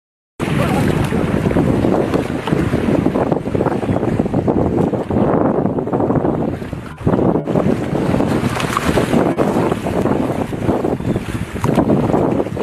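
Strong wind buffeting the microphone, mixed with the rush of water from the bow wave of a large submarine running on the surface. The noise dips briefly about seven seconds in.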